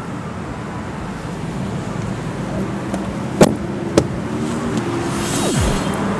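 Toyota Yaris rear seatback being folded down: two sharp clicks about half a second apart, a little past the middle, over a steady background hum of traffic. A short falling sweep comes near the end.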